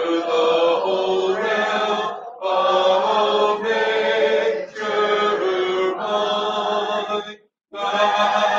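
Congregation singing a hymn a cappella in several voice parts, with a short breath break between phrases a little after two seconds and another near the end.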